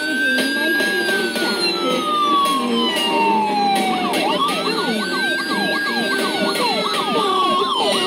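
Police siren recording played on a phone: two long wails, each rising quickly and falling slowly over about four seconds, with quicker up-and-down sweeps over the second wail.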